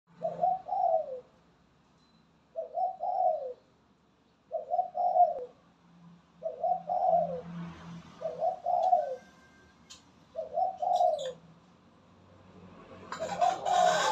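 Spotted dove cooing, the same short phrase about every two seconds, seven times, while it is in moult yet still calling hard. Near the end a louder burst of noise covers the last coo.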